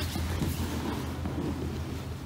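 Two grapplers rolling on a mat: gi fabric rustling and bodies shifting against the mat, most clearly in the first half second, over a steady low hum.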